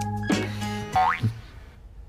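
Playful comedic drama score with a bouncing bass line, topped by a quick rising cartoon-style sound effect about a second in; the music then cuts off and the rest is quiet.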